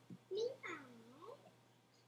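A wordless, sliding vocal call from a person's voice over the video-call audio: a short rising note, then a longer one that dips in pitch and climbs back up.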